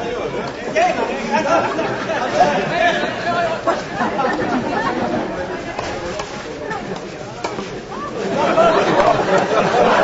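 Several people chattering at once, the words indistinct, growing louder near the end.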